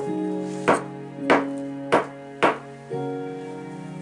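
Four sharp taps, about every half second, of a toy hammer striking a plaster gem-excavation block, over soft background music.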